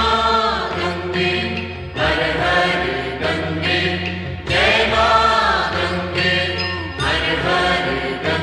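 Hindi devotional aarti song to the goddess Ganga: sung voices in phrases over instrumental accompaniment with sustained low notes underneath.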